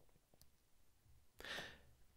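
Near silence, then a short quiet intake of breath by a man about one and a half seconds in.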